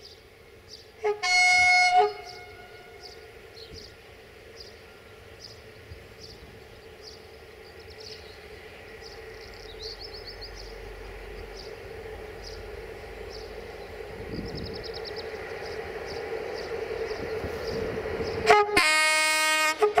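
Horn of a Softronic Transmontana electric locomotive leading a train of twelve coupled electric locomotives: a blast of about a second near the start, then the rumble of the approaching train growing steadily louder, and a second, longer blast near the end as it comes close.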